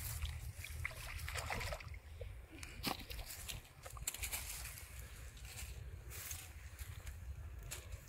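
A hooked fish splashing and sloshing in shallow pond water as it is played and pulled out on a bamboo pole, with scattered short knocks and rustles from the handling.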